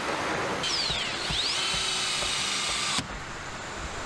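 A power tool on a car assembly line runs for about two seconds with a high whine and hiss, its pitch dipping and rising, then stops abruptly. Steady factory noise runs underneath.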